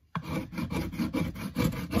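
Hand file scraping the tail of a cottonwood carving in quick, repeated back-and-forth strokes. The strokes start just after a brief silence.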